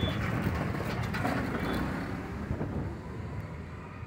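Vehicle noise: a steady, even rush that slowly fades toward the end, with a few faint clicks.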